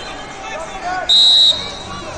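A referee's whistle: one short, loud, steady blast of about half a second, a little past the middle, over the murmur of voices in a large hall.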